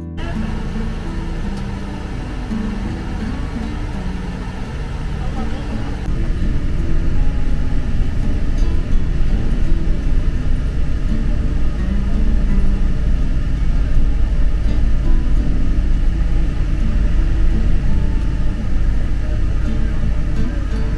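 Engine and road noise rumbling steadily inside a moving minibus. It starts louder about six seconds in, after a stretch of quieter table ambience with voices. Music plays over it throughout.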